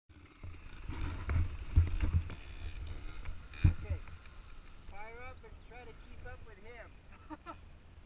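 Low rumble and a few sharp knocks on an action camera's microphone as it starts recording and is handled, the loudest knocks about two and three-and-a-half seconds in. Then muffled voices and a laugh.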